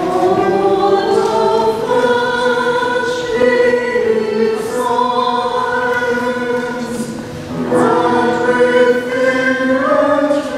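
A church choir singing in slow, long-held notes that move to a new chord every second or two.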